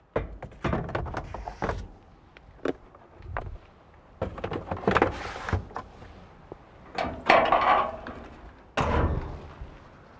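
Excavator air filter element and its housing being handled: a series of knocks and thunks, with a few longer scraping slides as the element is moved in the housing, mostly in the second half.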